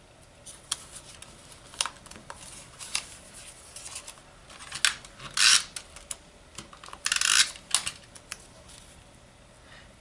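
Small pieces of cardstock and patterned paper being handled and pressed down on a craft mat: scattered light taps and rustles, with two short rasping strokes about five and a half and seven seconds in.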